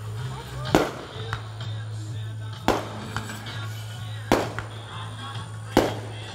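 Aerial fireworks shells bursting: four loud booms roughly one and a half to two seconds apart, with fainter pops between them.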